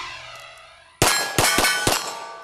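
Four rapid pistol shots starting about a second in, roughly a quarter second apart, with steel targets ringing as they are hit.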